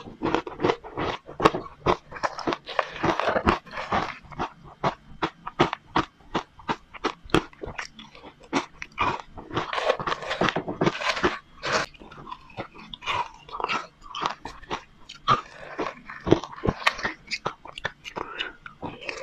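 Crushed matcha ice being bitten and chewed close to a clip-on microphone: a dense run of sharp, crisp crunches, several a second.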